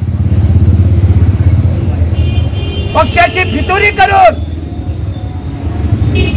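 An engine running close by: a low, evenly pulsing rumble, loudest in the first two seconds, with a man's voice over it about three seconds in.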